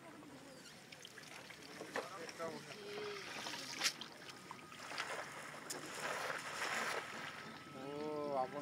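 Water splashing and swishing as men wade through shallow floodwater, building up in the second half as a cast net is thrown and lands spread on the water, with a few sharp clicks. Brief voices in the distance.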